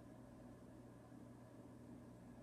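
Near silence: room tone with a faint steady low hum.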